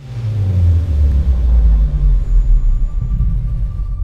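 A loud, deep, steady rumble from a film's soundtrack, starting suddenly, with a faint hiss above it that fades out about three seconds in.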